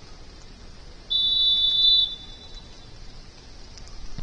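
Referee's whistle: one steady, shrill blast about a second long, signalling the set piece to be taken.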